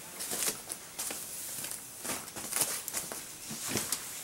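Scattered soft knocks, clicks and rustles of a person moving about and handling a side-by-side shotgun, with no steady sound beneath them.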